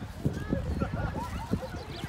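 Indistinct chatter of people in the distance, in short broken fragments without clear words, over an uneven low rumble with frequent soft knocks.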